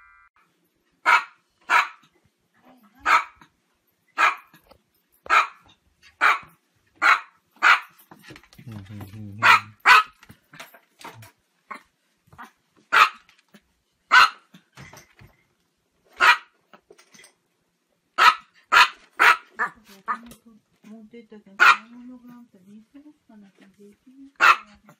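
Chihuahua barking: about twenty short, high-pitched yaps, roughly a second apart, with a quick run of four or five in the last third.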